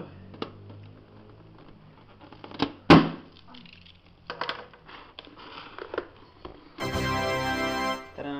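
A rubber balloon bursts with one loud sharp pop about three seconds in as scissors cut into it inside a dried papier-mâché shell, with a few small clicks and rustles around it. Near the end comes a steady musical tone about a second long.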